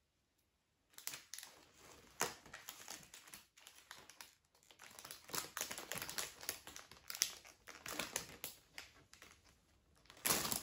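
Clear cellophane and paper wrapping around a bouquet of dried flowers crinkling in irregular bursts as hands unwrap it, starting about a second in.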